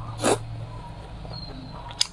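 A short, loud, wet slurp about a quarter second in as a saucy strip of braised food is sucked into the mouth off chopsticks, then quieter mouth sounds of chewing.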